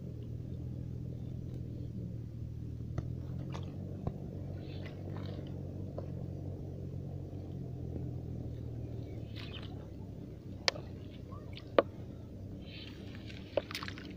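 A plastic bottle being handled in shallow water: scattered light splashes and rustles, and three sharp clicks in the last few seconds, over a steady low hum.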